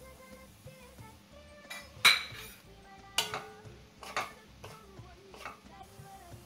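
A utensil clinking and knocking against a metal pan while food is stirred in it: about five sharp knocks, the loudest about two seconds in, with soft background music underneath.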